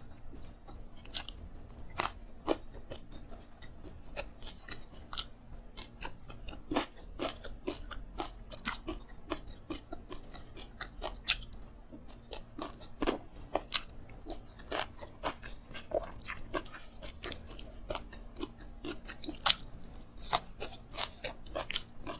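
Close-miked chewing and crunching of fried dried anchovies (dilis) eaten with rice by hand, with many sharp, irregular crunches and wet mouth clicks. Fingers are licked near the end.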